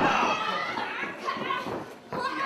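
Several voices shouting and yelling at once: a pro-wrestling crowd and wrestlers calling out during a kicking exchange in the ring. The voices drop away briefly near the end.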